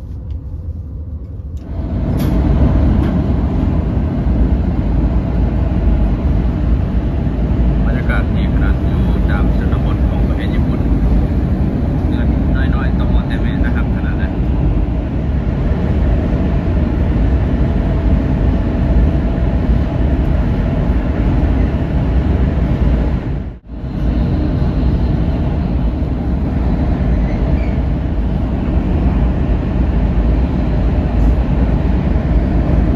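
Shinkansen bullet train running at speed, heard from inside the passenger car as a loud, steady low rumble. It jumps up about two seconds in and drops out for a moment near the end.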